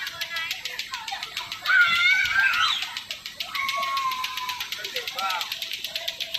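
Children calling and shouting in high voices while playing, the loudest cry about two seconds in, with a longer held call a little later.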